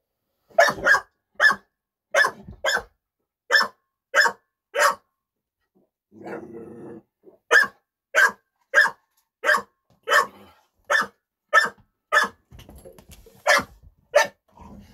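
A pit bull barking repeatedly in short, sharp barks, about one or two a second, in two runs. The runs are broken by a low growl about six seconds in.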